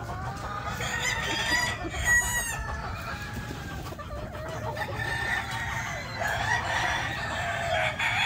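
Roosters crowing: long drawn-out crows overlapping one another, one bout from about a second in and another from about four and a half seconds on.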